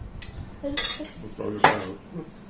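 Dishes and cutlery clattering on a table: two sharp clinks about a second apart, the second louder.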